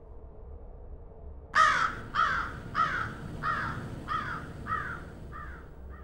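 A bird giving a series of about eight harsh cawing calls, a little under two a second, each falling in pitch and each fainter than the last, starting about a second and a half in. A faint low hum runs underneath.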